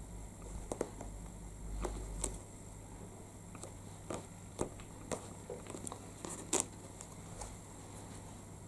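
Hands pressing and rubbing a clear acrylic-mounted rubber stamp down onto card laid over a stack of paper: faint rubbing with a low dull rumble in the first couple of seconds, then scattered light taps and clicks as the stamp block is handled and lifted away.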